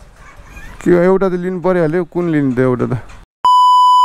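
A person's voice for about two seconds, then a sudden cut to a loud, steady, high test-tone beep, the classic colour-bars tone used as an edit effect, lasting under a second near the end.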